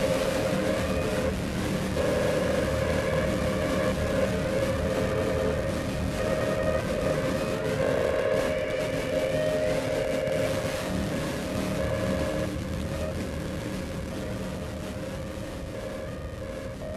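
Soundtrack of a dance-theatre performance film: a loud, dense, sustained drone made of several held tones, easing slightly in the last few seconds.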